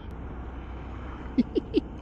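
Honda Monkey 125's small air-cooled single-cylinder engine and wind heard as a low, steady drone on a helmet camera while riding. About one and a half seconds in, the rider gives three short chuckles.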